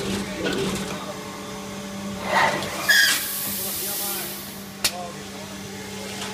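Codatto MBY 2214 sheet-metal panel bender at work: a steady electric hum, a swelling whirr of moving axes about two seconds in, a loud metallic clank just before three seconds followed by about a second and a half of hiss, and a sharp click near five seconds.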